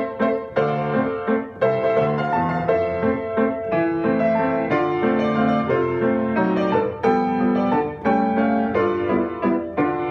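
Grand piano played solo: a melody in the right hand over left-hand bass notes and chords, the notes struck in a steady, flowing rhythm.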